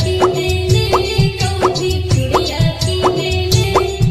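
Instrumental stretch of a Magahi DJ remix: a heavy bass beat with a short rising pitched stroke about every two-thirds of a second, over a held note.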